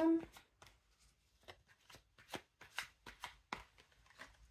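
Tarot cards being shuffled and handled, a string of irregular light snaps and flicks of card stock.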